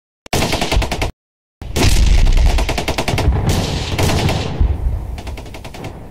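Automatic gunfire: a short rapid burst, then a longer burst from about a second and a half in that slowly dies away over the last few seconds.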